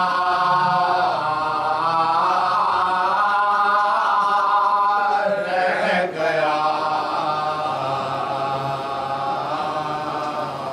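Male voices chanting an Urdu salam together without instruments: a lead singer at the microphone with the other men singing along. The pitches are held long, with a short break for breath about six seconds in.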